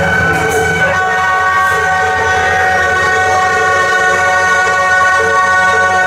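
Wind instruments of a procession music troupe holding long, steady notes, several pitches at once, the chord changing about a second in. A steady low drone runs underneath.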